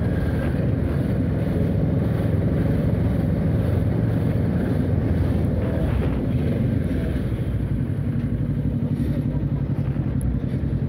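A 2021 Kawasaki Ninja 650's 649 cc parallel-twin engine running steadily while the bike rolls through traffic at about 40 km/h, slowing almost to a stop near the end.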